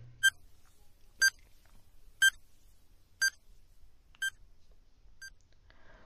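Countdown timer sound effect: six short electronic beeps, one a second, the last one fainter.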